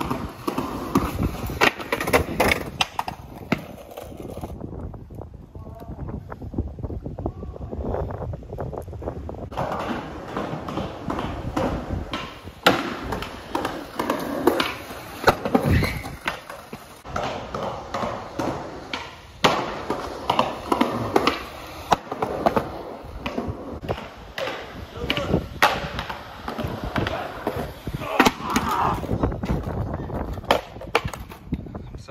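Skateboard wheels rolling on concrete, with repeated sharp clacks of the board: tail pops, landings and board slaps. About halfway through comes a heavy thud as a skater bails and his board clatters off on the ground.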